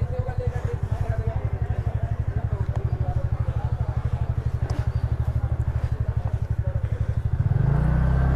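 TVS Ntorq 125 scooter's single-cylinder four-stroke engine ticking over at low revs while the scooter creeps along, each firing stroke heard as an even putt a little over ten times a second. Near the end the throttle is opened and the engine settles into a steady hum.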